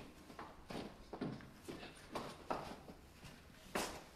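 Faint, irregular footsteps and light knocks, about two or three a second, with a sharper knock near the end.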